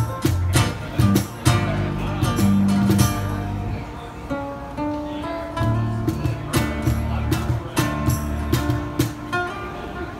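Live instrumental flamenco: acoustic guitar with electric bass underneath, punctuated by frequent sharp percussive strokes. The playing thins out and softens briefly in the middle, then picks up again.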